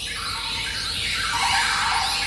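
1980s synth-pop record playing from vinyl: its intro opens with a synthesized noise sweep that falls steadily in pitch and grows louder.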